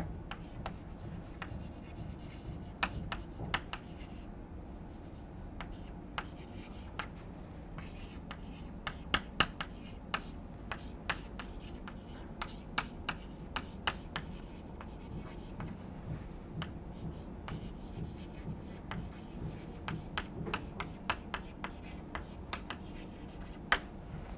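Chalk writing on a blackboard: faint, irregular taps and short scratches of the chalk strokes, over a low steady room hum.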